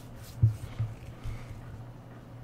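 Cards being handled on a table: a short soft thump about half a second in and a couple of fainter knocks, with light rustling, over a steady low hum.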